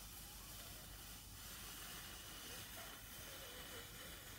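A man breathing out slowly and steadily, a long faint hiss of air, as in a vital-capacity test where the whole breath is let out slowly rather than forced fast.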